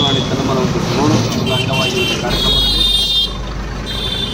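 Road traffic: vehicle horns honking, a few short toots and then a longer blast about halfway through, with another starting near the end, over the low rumble of a passing vehicle's engine.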